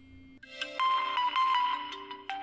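A phone ringtone melody playing from a realme 7 Pro Android phone's speaker, set off remotely through Windows 11 Phone Link's 'Play sound' find-my-phone alert. It comes in about half a second in as a run of chiming held notes and turns loud just before the one-second mark.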